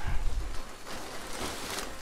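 Thin clear plastic bag crinkling and rustling as it is pulled off an action figure's plastic blister pack, a little louder in the first half second.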